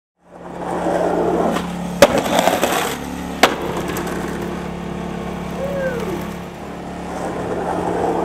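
Skateboard wheels rolling on concrete, with a sharp clack of the board about two seconds in and a second one about a second and a half later. The rolling eases off in the middle and picks up again near the end.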